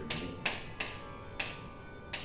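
Chalk writing on a chalkboard: about four short tapping and scraping strokes over two seconds.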